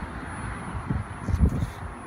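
Wind buffeting a handheld phone's microphone outdoors: a low rumble in uneven gusts, the strongest about one and a half seconds in, over a steady outdoor background hiss.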